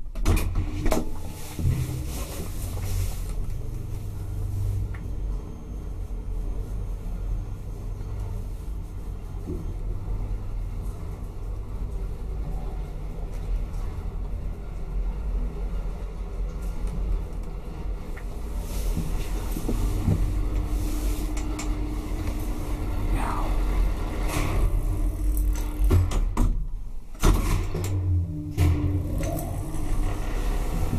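1962 KONE traction elevator in motion, heard from inside the car: the machine starts abruptly, then runs as a steady low rumble. About two-thirds of the way through a steady hum joins in, and near the end the sound breaks off briefly.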